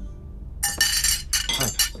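Cutlery clinking against china and glassware at a dinner table: a quick run of sharp, ringing clinks beginning about half a second in, from someone eating in a hurry.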